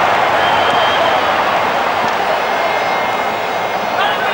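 Steady noise of a large football stadium crowd, fading slightly toward the end.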